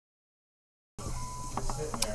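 Dead silence for about a second, then recording hiss and a low hum cut in suddenly, with a brief steady beep-like tone and faint voice sounds near the end.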